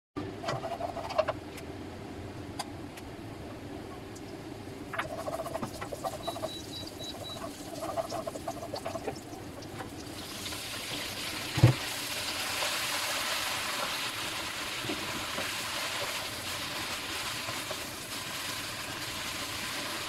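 Kitchen cooking sounds: scattered clinks and knocks, and four short high beeps a little after six seconds. About halfway through, a steady sizzle of food frying in a pan begins, with a single heavy thump soon after it starts.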